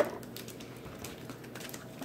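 Faint, scattered light clicks and taps of Pokémon trading cards and their foil pack wrappers being handled.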